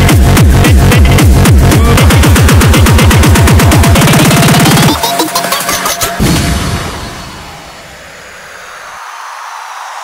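Hard tekno electronic dance music: a fast, heavy kick-drum beat with synths that quickens into a tighter roll about four seconds in, then breaks down about a second later, the kick dropping out and leaving a quieter, fading sweep.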